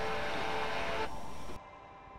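Steady room hiss and hum with no speech, cutting off sharply about one and a half seconds in.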